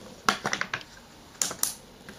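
Snap-on lid of a plastic pot being prised open: a few sharp plastic clicks, a cluster in the first second and two more about a second and a half in.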